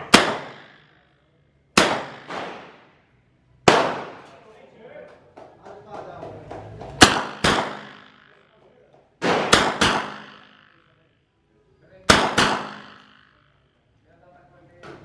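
Heckler & Koch MP5 9mm submachine gun fired in semi-auto: single shots and quick pairs, spaced a second or two apart, each followed by an echo from the roofed range.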